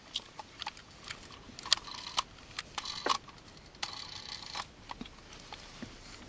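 Light, irregular clicks and clatter of a small hard-plastic toy submarine being handled, its wheels turned by hand, with a brief soft rustle about four seconds in.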